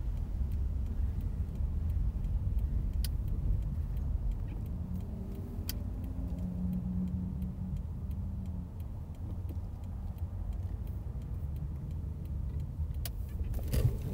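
Steady low rumble of a car's engine and tyres heard from inside the cabin while driving slowly, with a few scattered light clicks or rattles.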